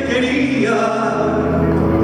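A man singing slow, long-held notes into a microphone in a folk ballad, changing to a new sustained note about two-thirds of a second in.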